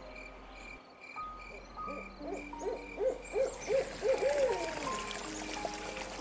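Soft background music: quiet held notes that step from pitch to pitch over a faint, evenly pulsing high tone. About halfway through comes a quick run of short rising-and-falling notes.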